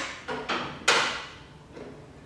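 Metal foot bar of an SPX Pilates reformer being lowered: a small knock about half a second in, then a louder metallic clunk with a short ring about a second in as the bar drops into its lowest position.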